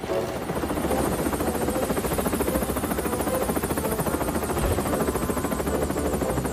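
Helicopter rotor beating in a fast, even chop.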